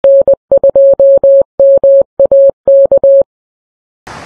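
A steady Morse code tone, about 600 Hz, keyed in dots and dashes that spell the amateur radio call sign N2MAK, ending about three seconds in.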